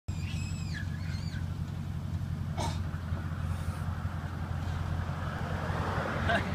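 Nissan Titan's 5.6-litre V8 idling steadily, a low even hum. Two short high descending calls sound in the first second and a half.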